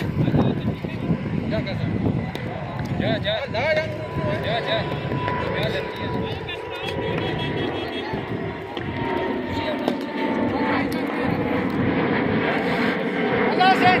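Outdoor hubbub of distant voices and calls from players. Under it runs a steady droning hum with faint whining tones, which grows stronger in the last few seconds.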